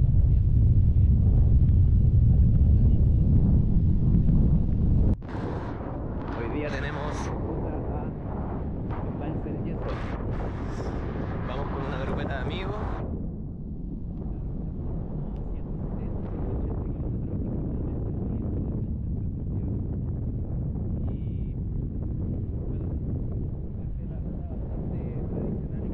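Wind buffeting the microphone of a camera on a moving road bicycle: a heavy low rumble that cuts off abruptly about five seconds in, giving way to quieter wind and street traffic noise.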